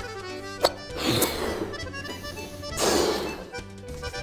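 A latex balloon being blown up by mouth: two breathy blows, one about a second in and one near three seconds, over background music. A short click comes just before the first blow.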